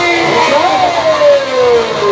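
Chhattisgarhi jas geet devotional folk music playing loudly: a held melodic line slides up about half a second in, then falls slowly over the next second and a half.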